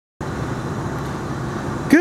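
Steady low rumbling background noise that cuts in a moment after the start, without a clear pitch.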